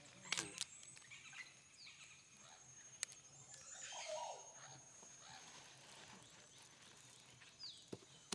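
Near silence: faint outdoor ambience with a thin steady high tone, a few soft clicks in the first second, one sharp click about three seconds in, and a faint short call around four seconds.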